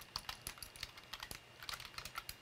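Typing on a computer keyboard: a quick, uneven run of quiet key clicks.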